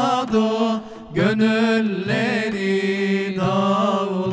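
Male vocal group singing a slow devotional lament with long, wavering held notes, accompanied by frame drums (bendir). The singing breaks off briefly about a second in, then resumes.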